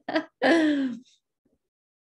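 A woman laughing softly: a short sound, then a longer one that falls slightly in pitch, both within the first second.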